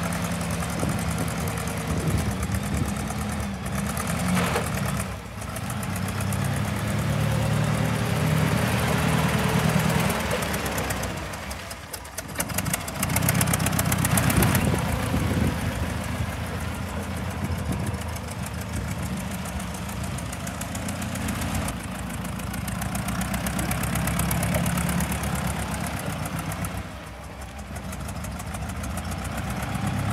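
Clark G500-Y55 LPG forklift engine running while the truck is driven, its speed rising and falling, with three brief drops in level.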